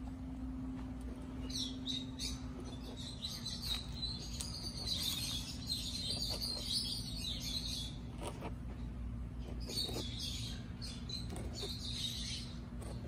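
Giant tortoise eating dry pellets from a feed tub: scattered short crunches and clicks as she bites and chews.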